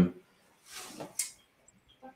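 A man's spoken word trails off, then there is a short, faint in-breath during the pause. A single sharp click follows about a second in.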